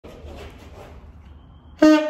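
A saxophone sounding one loud held note that comes in suddenly near the end, after faint background noise.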